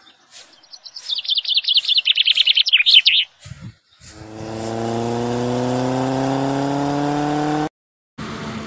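A small songbird sings a fast trill of high notes, slightly falling in pitch, for about two seconds. About a second later an engine drone sets in and holds, rising slowly in pitch, until it cuts off abruptly near the end.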